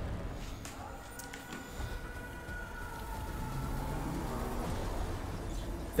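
Opening of a film trailer's soundtrack: a low rumbling drone with a faint, held high tone that fades out past the middle.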